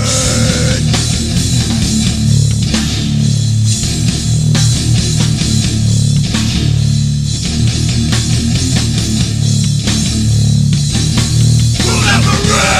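Beatdown hardcore band playing an instrumental passage: heavily distorted guitars and bass chugging low chords in blocks about a second long over pounding drums.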